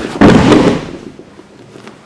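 A person thrown onto a padded training mat: one loud thud of the body landing and breaking the fall about a quarter of a second in, fading within about half a second.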